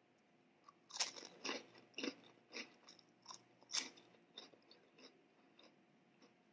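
Close-miked crunchy chewing of a crisp snack: a run of sharp crunches about two a second, loudest about a second in and near four seconds, tapering to softer chewing near the end.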